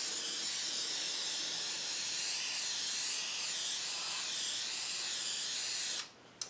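Aerosol spray paint can (Krylon) spraying black paint onto aquarium glass in one long, steady hiss that cuts off sharply at the end.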